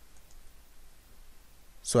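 A faint computer mouse click a few tenths of a second in, over low room tone.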